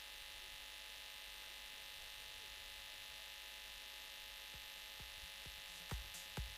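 Faint, steady electrical buzzing hum of mains hum, with a few faint clicks near the end.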